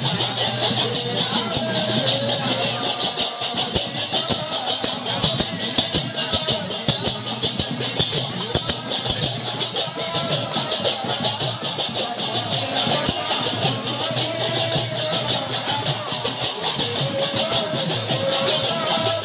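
Devotional kirtan music: large brass hand cymbals (jhanja) clashing in a fast, steady rhythm, with voices singing the chant.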